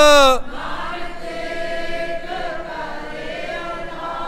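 Sikh kirtan singing: the lead singer's held note slides down and ends about half a second in. Then a softer group of voices holds the melody steadily, a choir-like sound.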